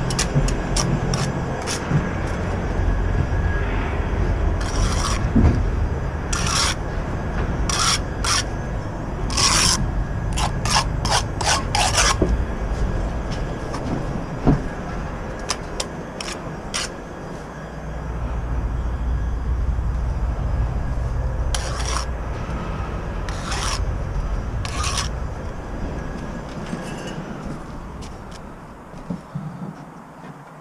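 Steel bricklaying trowel scraping and cutting mortar on a mortar board and spreading it on bricks, in clusters of short, sharp scrapes, mostly in the first half and again about two-thirds of the way through. A steady low rumble runs underneath.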